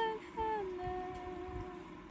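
A voice holding a long, steady hummed or sung note; it breaks off briefly just after the start, comes back and slides down to a lower note, which is held until it stops about three quarters of the way through.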